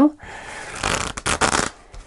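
A deck of thick tarot cards being shuffled by hand: a soft papery rustle, then a quick dense run of card flicks about a second in.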